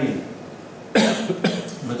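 A cough close to the microphone, about a second in, two sharp bursts about half a second apart.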